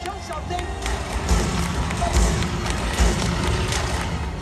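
Water stunt show action: loud music with three heavy thuds and sharp bangs, over the engine and spray of a jet ski speeding across the lagoon.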